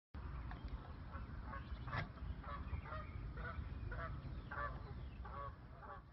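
Geese honking over and over, about two calls a second.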